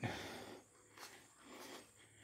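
A man breathing out after speaking, a hiss that fades over about half a second, followed by a few faint soft rustles and bumps.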